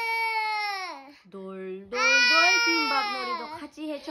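A toddler's long, high-pitched drawn-out wails. There are two long cries, and a short lower sound comes between them about a second and a half in.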